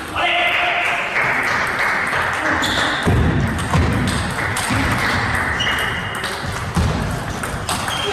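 Table tennis rally: the ball clicking off the rackets and the table in repeated short strikes, with a steady hiss behind it.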